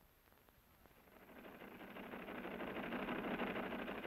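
A machine running with a rapid clatter, fading in and growing steadily louder.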